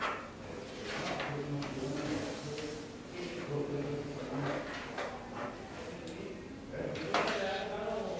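Sheets of paper being handled and slid across a table while documents are signed, with faint murmured voices; a louder rustle about seven seconds in.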